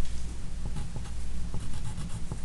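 Pen scratching on paper in short, irregular strokes as an equation is written, over a steady low hum.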